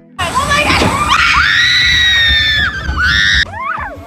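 Riders screaming on the big drop of Splash Mountain, a log flume ride, over a loud rushing noise; the screams start suddenly, one is held long, and they cut off about three and a half seconds in, followed by a short cry.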